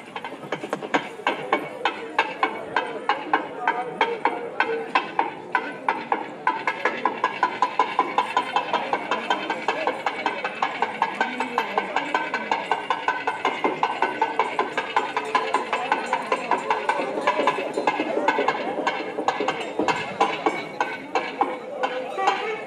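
Festival drums beating a fast, steady rhythm of about four or five strikes a second, starting about a second in and growing louder about a quarter of the way through, over the chatter of a crowd.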